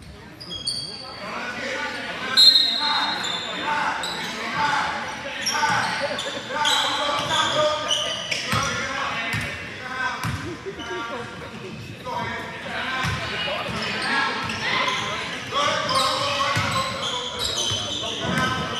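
A basketball game in a gym: a ball dribbled on the hardwood court, sneakers squeaking in short high chirps, and players' and spectators' voices, all echoing in the large hall.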